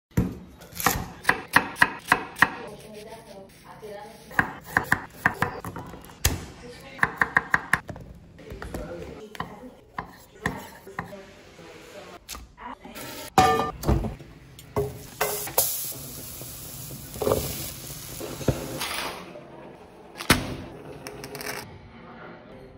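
A kitchen knife chopping on a thick wooden cutting board in short quick runs of about four strikes a second, followed by scattered knocks and a stretch of hiss like food sizzling in a pan.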